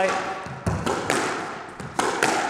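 Squash ball being driven by a racket off the ground against the front wall in a solo drill: a few sharp knocks roughly half a second to a second apart, each ringing out briefly in the court.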